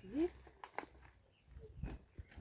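Fresh banana leaves being folded and wrapped by hand, giving a few short, faint crackles.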